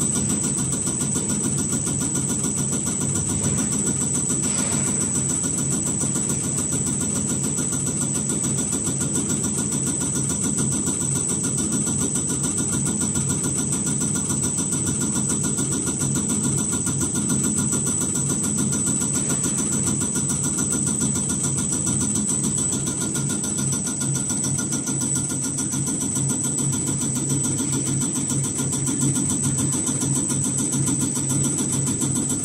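Common rail injector test bench running an injector test: its motor and high-pressure pump run steadily under a rapid, even ticking from the injector being fired, with a steady high-pitched whine over it.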